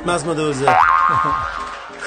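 A man's drawn-out voice, then, about two-thirds of a second in, a comic sound effect: a quick upward glide into a held ringing tone that fades out before the end.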